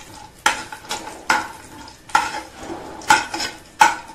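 A steel spoon scraping and clinking against a thin aluminium pan as nuts are stirred and fried, a stroke about every second with a short metallic ring, over a faint sizzle.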